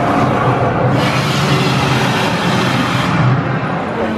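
Flame effect of the Gringotts fire-breathing dragon: a loud rushing burst of fire over a low rumble, swelling about a second in and cutting off shortly after three seconds.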